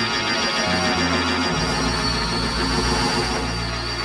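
Early-1960s rock'n'roll band recording playing at full volume, with a steady beat.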